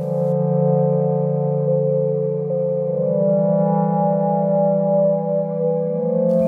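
Roland Aira S-1 synthesizer playing a slow ambient patch: a steady, sustained low drone with soft held tones above it, the low note shifting about halfway through.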